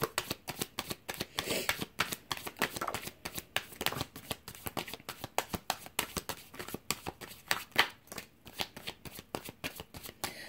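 Tarot cards being handled and dealt onto a wooden table: a long, irregular run of light card flicks and taps.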